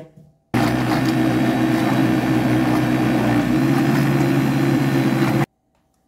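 Electric countertop blender motor running at a steady speed, blending a liquid cake batter of milk, eggs, cornmeal and flour. It starts suddenly about half a second in and cuts off suddenly near the end.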